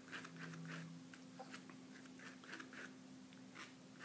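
Palette knife scraping and spreading oil paint on a paper test sheet: a run of faint, irregular scraping strokes as the paint is worked.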